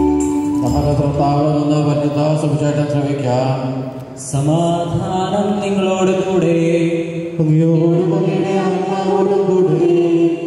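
Liturgical chant sung by a man's voice in long, wavering held notes, over sustained keyboard chords, with a short break about four seconds in.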